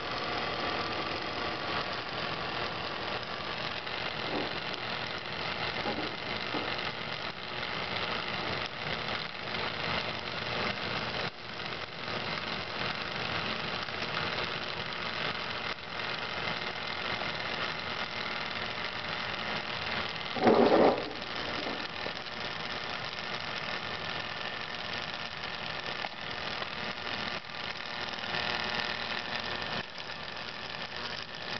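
Small 120 V double-shaft synchronous fan motor humming under power while burning out, with crackling from inside as its overheated windings short and it draws nearly three times its rated current. A brief, much louder burst comes about twenty seconds in.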